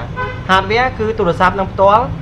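A person talking, with a steady low hum underneath.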